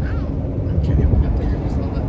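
Low, steady road and engine rumble inside the cab of a moving pickup truck.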